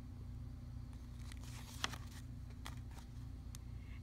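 A picture-book page being turned: a soft paper rustle about a second in, followed by a few faint clicks, over a steady low hum.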